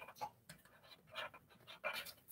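Felt-tip marker drawing on cardboard: a few faint, short scratching strokes with quiet between them.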